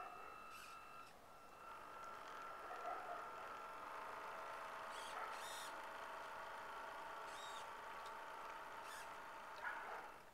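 Radio-controlled model boat's motor giving a faint, steady whine that dips briefly about a second in, with a few short chirps or clicks over it.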